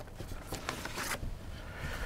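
Faint scraping and rustling of card and paper being handled as a vinyl record and its sleeve slide within a cardboard gatefold album jacket.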